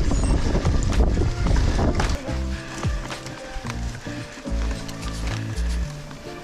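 About two seconds of mountain-bike riding noise, wind on the microphone and the bike rattling over the trail, then background music with steady bass notes takes over.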